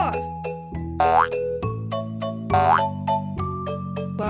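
Bouncy children's cartoon background music with a steady beat. Over it come three quick rising boing-like cartoon sound effects: one at the start, one about a second in, and one past the middle.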